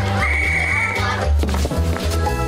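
Commercial background music with a pulsing bass line and steady beat. A bright, high held sound rides over it for about a second near the start.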